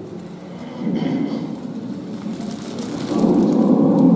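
Audience applauding in a reverberant church, mixed with crowd murmur. It swells about a second in and grows loudest near the end.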